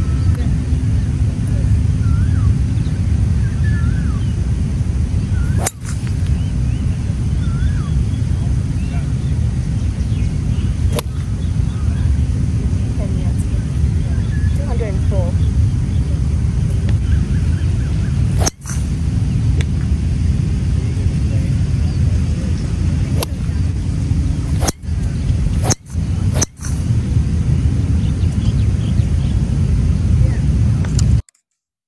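Steady low outdoor rumble on a golf driving range, broken by a few sharp clicks of golf shots being struck. Several sudden brief dropouts occur, mostly in the second half.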